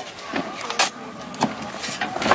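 Metal shovel blade scraping into loose soil and tossing dirt onto a grave: several short scrapes, the loudest about midway, with faint voices behind.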